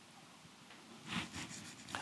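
Faint rustling of papers being handled, in two short bouts in the second half, followed by a short sharp click near the end.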